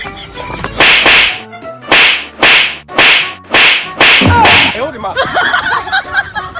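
A run of about eight sharp whip-like swishing hits in four quick pairs, each pair about a second apart, dubbed in as comedy sound effects.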